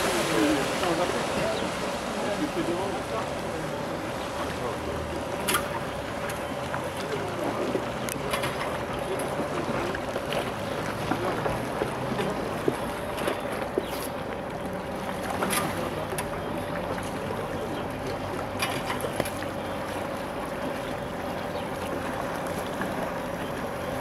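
Cable wakeboard tow system running, a constant thin whine over wind and water noise, with a few short sharp clicks.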